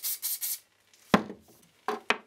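Aerosol spray-paint can hissing in a few quick, short bursts over the first half second. A little past a second in comes a single sharp knock, then a couple of clicks near the end.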